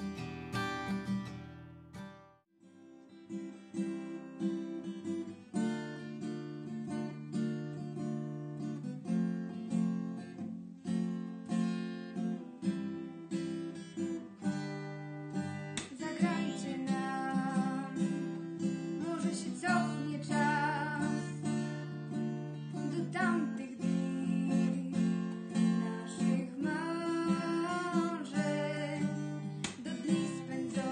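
Acoustic guitar strummed in steady chords, after a different piece of music cuts off about two seconds in. A young woman's singing joins over the guitar about halfway through.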